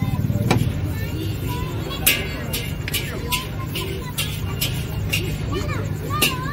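Busy street-stall background: a steady low hum with voices in the background, and from about two seconds in a sharp clicking about four times a second.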